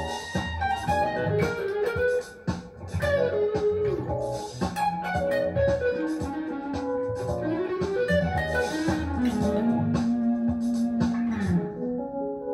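Ibanez electric guitar playing a melodic solo line with sliding notes over a hip-hop backing track with drums and bass, ending on one long held note near the end.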